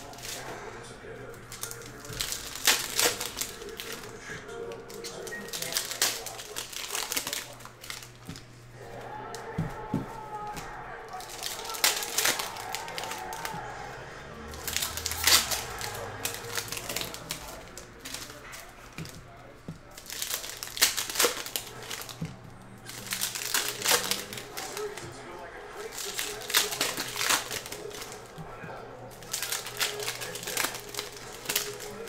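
Foil trading card pack wrappers crinkling and tearing as packs are ripped open, in short bursts every few seconds, with cards being handled between them.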